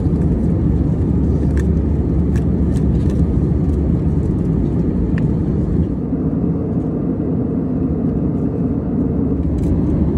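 Steady low roar of an Airbus A320's passenger cabin in flight, engine and airflow noise, with a few faint clicks in the first half.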